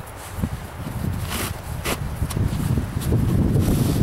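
Wind buffeting the microphone with a low rumble that builds toward the end, over a few short rustles of rope being drawn through by hand as a knot is tied.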